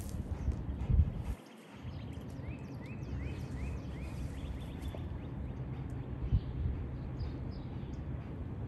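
Rottweiler panting hard from chasing a ball, over a steady low rumble with a couple of dull thumps. About two and a half seconds in, a bird gives a quick run of five short rising chirps.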